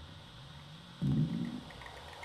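Experimental electronic noise from a live sound-art set: a low, pitched buzzing burst of about half a second that recurs every two seconds, here starting about a second in, with faint ticking clicks after it over a steady hiss.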